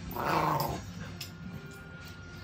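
A dog growling once, a short rough growl of under a second near the start.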